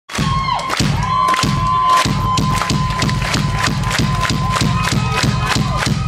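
Live rock band in a concert hall: drums hit a fast, even beat under a long held high note, while the crowd cheers.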